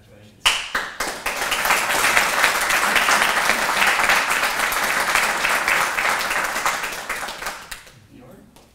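Audience applauding, starting abruptly about half a second in and tapering off near the end.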